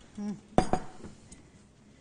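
Kitchen utensils and dishes clattering: two sharp knocks about a fifth of a second apart, a little way in.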